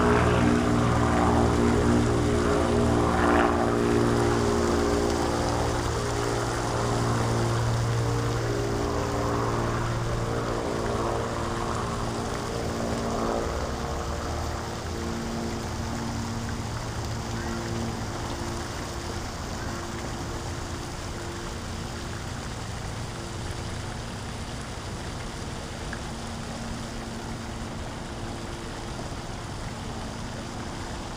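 A distant engine drone of several steady tones, slowly fading away, over a steady hiss of water.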